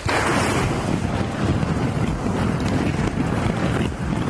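Plastic ball-pit balls clattering and rustling in a dense, continuous rattle as two people jump into the pit; it starts suddenly and stops abruptly near the end.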